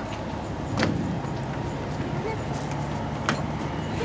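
Two sharp knocks, one about a second in and one near the end, over a steady low outdoor rumble.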